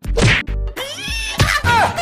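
Whacks of a white plastic pipe striking a man's back, two hits about a second apart, over background music.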